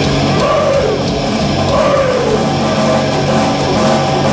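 Heavy metal band playing live: distorted electric guitars, bass and drums, loud and continuous, with bending notes sliding over the top about half a second in and again around two seconds in.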